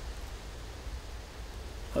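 Quiet outdoor background noise: a steady low rumble with a faint hiss, and no distinct events.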